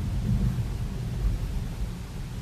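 Low, uneven rumble inside the cabin of a BMW i3 electric car rolling at walking pace, with no engine note to be heard: the car runs silently on its electric motor.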